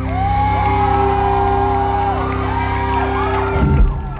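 Live band holding a final sustained chord that cuts off with a short closing hit near the end, while many high-pitched fan shrieks and cheers rise and fall over it.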